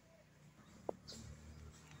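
Near silence: a faint low background hum with one soft click just under a second in.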